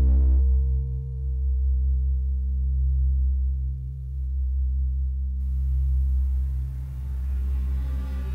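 Electronic music: a deep, steady synthesizer drone with slow swells, under a pure sine-like tone that wavers gently in pitch. The tone fades out about five seconds in, as a soft hiss rises.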